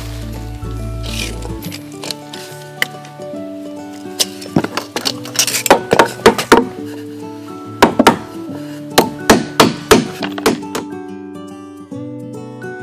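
Background music throughout, with a run of hammer blows on wooden framing from about four seconds in until near the end: quick strokes, several a second, with a short pause in the middle.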